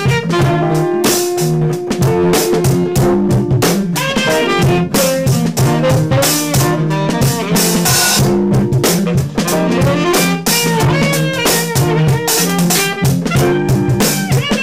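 Live band playing a jazz-flavoured instrumental groove: drum kit keeping a busy beat under a bass line, electric guitar and saxophone.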